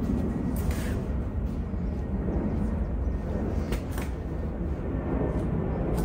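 Steady low background rumble and hiss, with a few faint light knocks.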